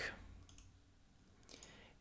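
A few faint clicks from a computer mouse over quiet room tone.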